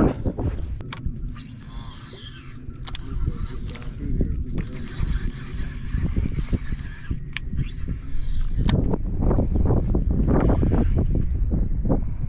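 Uneven low rumble of wind and water around the aluminum boat, with two short whirring sounds, about a second and a half in and again about eight seconds in, typical of a baitcasting reel's spool spinning on a cast.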